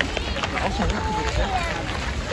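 Indistinct talk of people nearby, no words clear, over a steady rough outdoor background noise.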